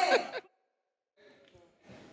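A woman laughing heartily in quick, high-pitched rising-and-falling pulses that trail off into a breathy exhale about half a second in.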